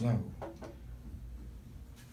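A man's reading voice trails off on a last word, then a pause of quiet room tone with a low, steady hum and a faint murmur about half a second in.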